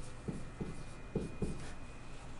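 Stylus writing numbers on a tablet screen: a quick series of short taps and scratches as the digits are jotted down.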